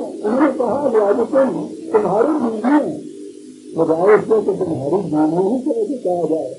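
A man's voice speaking Urdu in a lecture, with a short pause a little past halfway.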